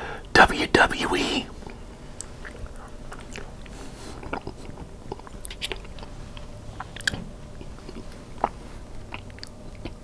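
Close-miked eating of mac and cheese: a loud wet bite and mouth sounds in the first second or so, then soft chewing with scattered small clicks and lip smacks.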